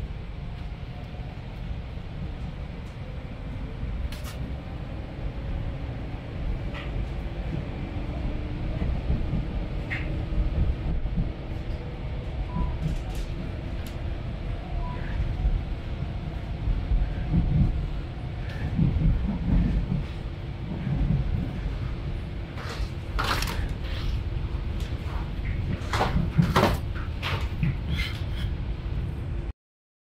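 Electric commuter train running, heard from inside the carriage: a steady low rumble of wheels on track with rattles and scattered sharp clacks, which bunch together near the end. The sound cuts off suddenly just before the end.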